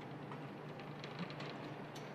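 Faint steady low hum of forge-shop machinery, with a few light clicks and ticks in the second half.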